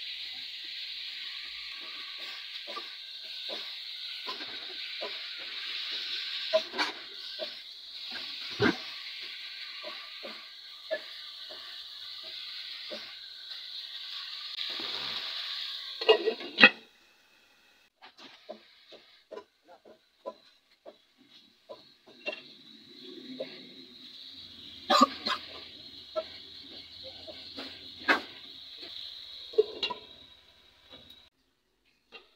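Pork pieces sizzling as they fry in a pot, with the spatula scraping and tapping against the pot as they are stirred. A little over halfway through, a lid is set on with a clatter and the sizzling drops away. It comes back fainter under the lid, with scattered ticks and clicks.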